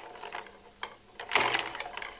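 Hand-spun rotor of a homemade axial flux alternator, a saw-blade magnet plate turning on a threaded rod without proper bearings, rattling and clicking as it spins. A louder scrape comes about one and a half seconds in.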